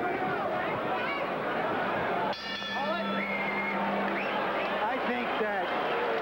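Arena crowd noise, with voices shouting and calling over the general din. About two seconds in, a steady low tone with many overtones starts abruptly and holds for about three seconds.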